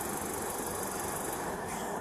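Steady vehicle and traffic noise: a constant low hum under an even hiss, with no sudden sounds.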